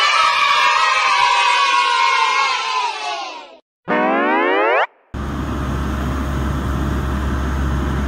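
Cartoon sound effects: a celebratory cheer for about three and a half seconds, then a quick rising boing about four seconds in. After that comes a steady low machine rumble from an excavator's auger drilling rig.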